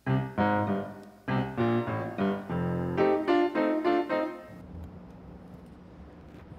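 Moog Liberation keytar synthesizer playing a short phrase of separate notes, one at a time, that stops about four and a half seconds in.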